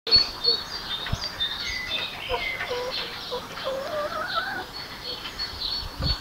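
Several birds chirping and calling, with many short, high chirps and lower gliding calls overlapping.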